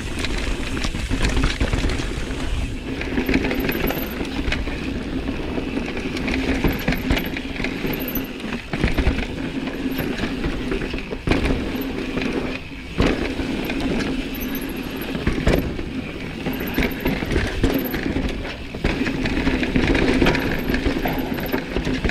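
Mountain bike descending a rough dirt forest trail: continuous tyre noise on dirt with frequent rattling knocks as the bike goes over rocks and roots.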